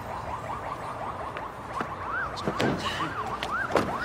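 A siren sounding in quick rising-and-falling sweeps, a few a second, growing louder in the second half.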